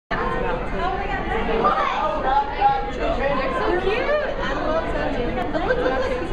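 Indistinct chatter of people talking, with no clear words, in an indoor public space.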